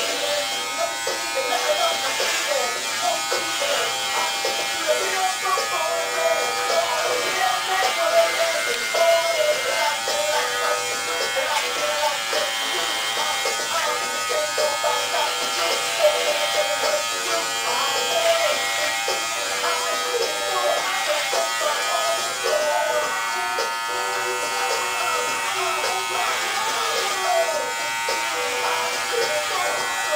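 Electric hair clippers buzzing steadily as they cut short hair, over background music with singing.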